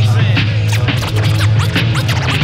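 Hip hop beat with turntable scratching over a steady deep bass line and drums.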